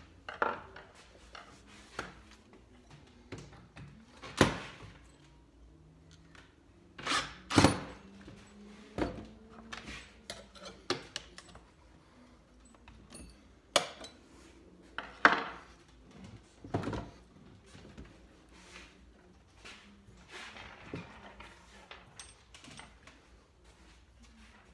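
Scattered knocks and metal clinks from a screwdriver and steel rods being handled and set down on a board while a solid honeycomb tire is worked onto a scooter wheel rim. The loudest knocks come about 4 s in, a close pair near 7–8 s, and two more near 14 and 15 s.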